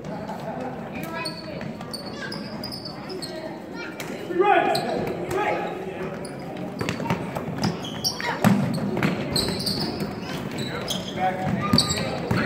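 A basketball bouncing on a hardwood gym floor, with scattered voices calling out, all echoing in a large hall. The knocks come thicker in the second half as play moves up the court.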